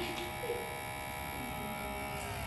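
Small DC hobby motor running at a steady speed, a buzzing whine with many even overtones.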